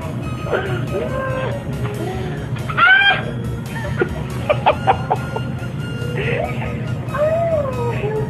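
A woman's squealing, shrieking cries that rise and fall, the loudest a rising squeal about three seconds in, with a quick run of sharp clicks a little later.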